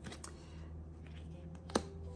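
Tarot cards being slid and rearranged by hand on a cloth-covered table: soft rustles and light taps, with one sharp click near the end, over a low steady hum.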